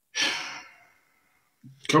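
A man sighs heavily, one breath out of under a second, then starts speaking near the end.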